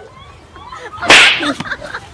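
A single loud whooshing hit about a second in, lasting a fraction of a second: a punch or slap sound in a play fight, most likely an added sound effect. A boy's voice cries out around it.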